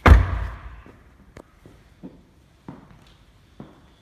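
A Porsche Cayman 981 GTS door shut once, a loud deep thud right at the start that dies away within about half a second, followed by a few soft footsteps on the showroom floor.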